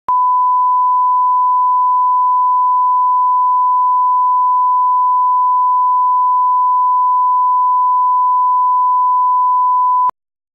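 Steady 1 kHz reference tone, the line-up tone that runs with colour bars at the head of a video tape so audio levels can be set. It is one unbroken pure tone that cuts off suddenly at the end.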